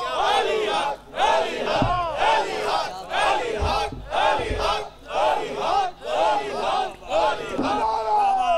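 A man shouting religious slogans, with a crowd of men shouting back in unison: rapid, loud shouted chants, about two a second.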